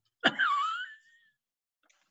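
A brief high-pitched vocal exclamation from a person, lasting about a second, its pitch dipping and then rising again, in reaction to a remark.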